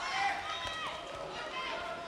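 Raised voices calling out in an indoor sports hall during a fast taekwondo exchange, with a dull thud near the middle.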